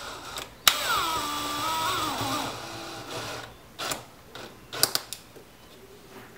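Power drill driving a wood screw into a plastic tape dispenser. The motor whine starts suddenly about half a second in, falls in pitch, holds, falls again and stops after about three seconds. A few light knocks follow.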